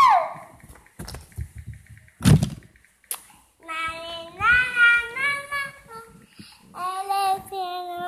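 A young girl singing a tune without clear words, in held notes in two phrases, with a thump about two seconds in.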